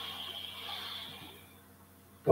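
A man's long, audible breath out, a soft hiss that swells and fades over about a second and a half. It is the exhale of abdominal breathing, the belly flattening as the air is let out.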